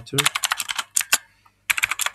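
Typing on a computer keyboard: a quick run of keystrokes for about a second, a brief pause, then more keystrokes near the end.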